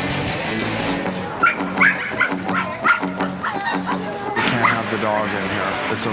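A dog yipping, a run of about eight short high barks starting about a second and a half in, over background music.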